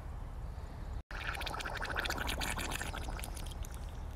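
A pig farting while sitting in a muddy water hole, the gas bubbling up through the water in a rapid wet sputter. It starts about a second in and lasts around two seconds.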